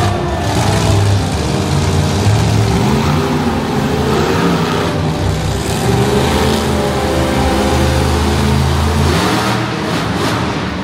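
Monster truck engine running loud and revving, its pitch rising and falling as the truck drives about the arena floor.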